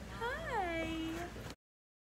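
A young baby's drawn-out coo, rising then falling in pitch and held for about a second. The sound then cuts off abruptly about one and a half seconds in.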